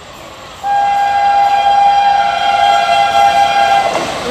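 Electric locomotive horn sounding one long steady blast of two close tones. It starts suddenly about two-thirds of a second in and stops just before the end.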